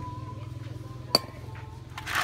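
A single sharp metallic clink about a second in, with a brief high ring, as metal tools and parts are handled. A steady low hum and a faint steady whine run underneath.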